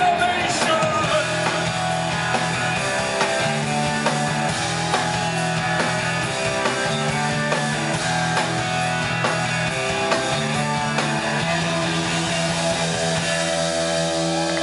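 Rock band playing live, recorded from the audience: electric guitar over held bass notes that change every second or two, with a drum kit, in an instrumental passage without vocals.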